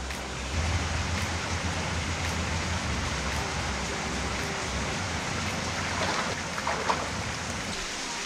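Steady rush of the Capilano River's water flowing over rocks, with a low rumble underneath for the first few seconds.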